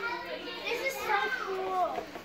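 A child's voice talking indistinctly, with no clear words.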